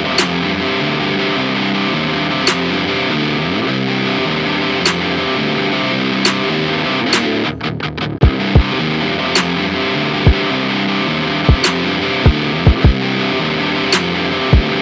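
Looped distorted electric guitar chords through an amp-simulator plugin, with a sharp hit about once every bar at 105 BPM. From about eight seconds in, deep kick drum hits come in at uneven spacing as a drum loop is tapped in on pads.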